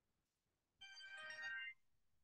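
A short electronic alert jingle of several clear tones, sounding once for about a second near the middle; otherwise near silence.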